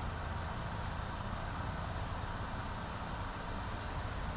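Electric fan running: a steady rushing noise with a low rumble underneath.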